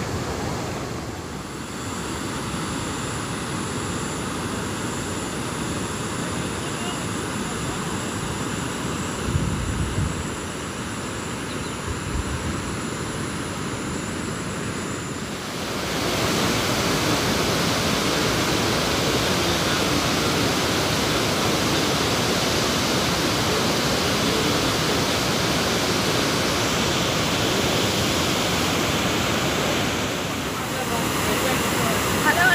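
A steady hiss with a few low bumps, then about halfway through it jumps to the louder, even rush of water pouring over a dam spillway.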